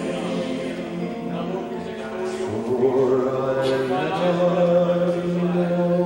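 Many voices singing a worship chorus together with the band, on long held notes.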